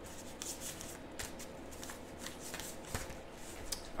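A deck of reading cards being shuffled by hand: soft, irregular flicks and rustles of the cards.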